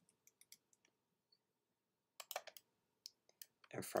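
Faint, scattered clicks and taps of a computer mouse and keyboard, a handful of separate ticks with a small cluster a little past halfway.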